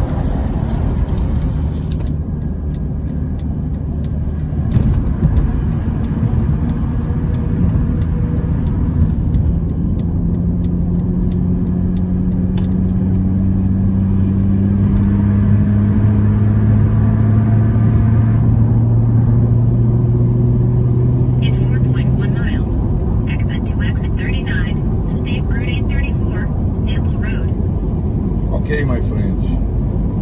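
Road and engine noise inside a car cruising on a highway: a steady low rumble, with a low engine hum that slowly rises in pitch for about fifteen seconds and then drops away.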